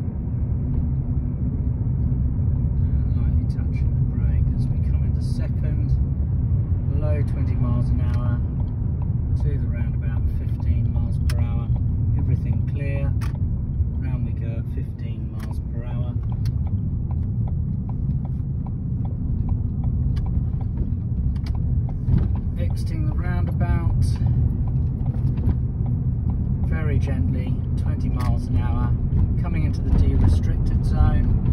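Steady low rumble of a Ford car's engine and tyres, heard from inside the cabin while driving gently at moderate speed.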